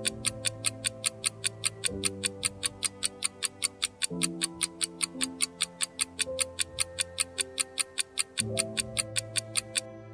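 Countdown-timer sound effect: even clock-like ticking at about four ticks a second over soft background music with held chords. The ticking stops just before the end as the timer reaches zero.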